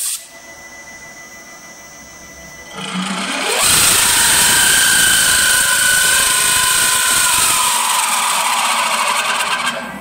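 Wood lathe spindle running quietly, then from about three seconds in a cutter bites into the spinning wooden blank of a wind instrument: a loud, steady cutting hiss with a whine. It eases off and stops just before the end.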